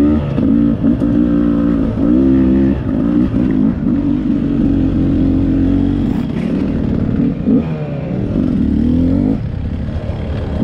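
Dirt bike engine running hard while ridden, revving up and down as the throttle opens and closes, with short steady stretches between.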